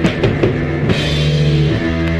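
Heavy psychedelic rock music: a drum kit with cymbal crashes playing over held, sustained chords, with a loud hit right at the start and another cymbal crash about a second in.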